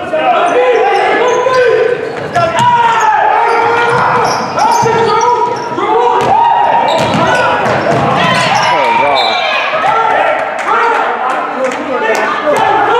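Basketball being dribbled on a hardwood gym floor during a game, repeated sharp bounces that echo in a large gym, over a steady run of voices.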